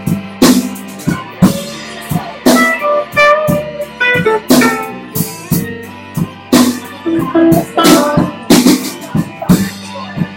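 Live band playing: a drum kit keeping a beat with a sharp hit about once a second, over electric bass, electric guitar and harmonica.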